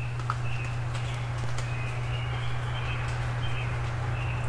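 Songbirds calling in a spring dawn chorus: many short, high notes in quick succession over a steady low hum, with a few faint ticks.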